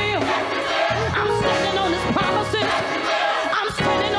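Live gospel music: singing over instrumental backing, with a congregation clapping and shouting along.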